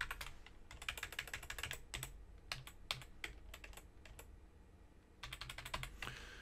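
Typing on a computer keyboard: quick runs of key clicks, a lull of over a second, then another run of keystrokes near the end.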